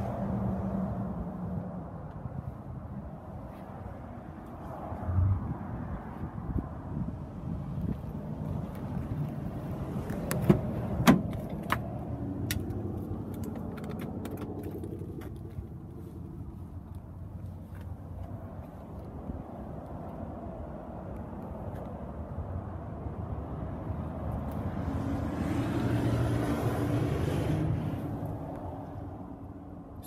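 Steady outdoor background rumble with a thump about five seconds in and a pair of sharp clicks around ten to eleven seconds in, as the car's driver door is opened; a swell of noise comes near the end.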